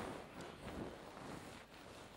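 Faint rustling and handling noise on a desk microphone, loudest at the start and fading away.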